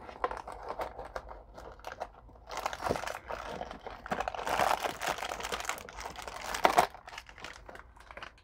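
Foil blind-bag packet crinkling and crackling as it is pulled out of a cardboard box and torn open by hand. The crackling is loudest in the middle and dies down near the end.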